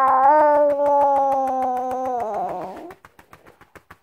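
A baby under a year old crying in one long wail while being settled to sleep, the cry of sleepy fussing; it tails off about two and a half seconds in. Quick, even pats on the baby's back, about seven or eight a second, keep going.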